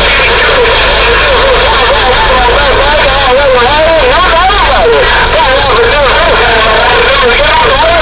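CB radio receiving on channel 11: voices of distant stations come through its speaker thin and distorted, overlapping and hard to make out, over a steady low hum and static.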